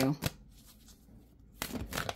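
Tarot cards being shuffled off-camera: a short burst of quick papery flicks and rustles near the end, after a brief stretch of quiet.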